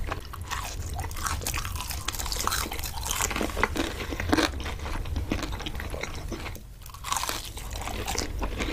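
Close-miked chewing and crunching of crispy fried fast food, a dense run of crisp bites and mouth sounds over a low steady hum, easing off briefly near the seventh second.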